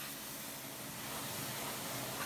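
Pressure washer spraying a jet of water onto a copper swan neck: a steady, even hiss.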